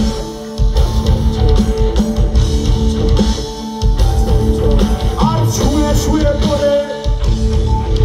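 Live rock band playing through a concert PA: electric guitar and drum kit, with a male lead vocal. The band briefly drops out three times, near the start, midway and near the end.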